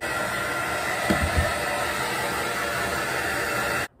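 Handheld hair dryer blowing on wet hair: a steady rush of air with a faint steady motor tone, broken by a couple of low thuds about a second in. It cuts off suddenly near the end.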